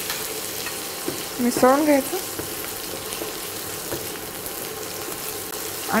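Cubed potatoes, onions and peanuts frying in hot oil in a nonstick kadhai: a steady sizzle with light scraping of a spatula stirring. A short voiced sound comes about a second and a half in.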